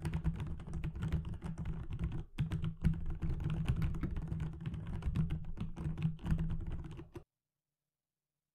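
Recording of typing on Gamma Zulu mechanical key switches, Das Keyboard's soft tactile switch: a fast, continuous run of soft key clicks that cuts off suddenly about seven seconds in.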